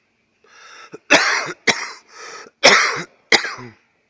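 A person coughing hard four times in quick succession, drawing breath before the first cough and between the second and third.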